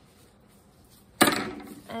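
A metal palette knife set down on a hard tabletop with one sharp clack a little past halfway through, ringing away briefly.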